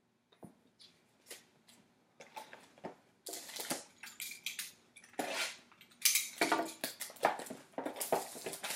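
Plastic wrapping and foil card packs crinkling as a trading-card box and its packs are handled, with a few light clicks at first and denser crackling from about three seconds in.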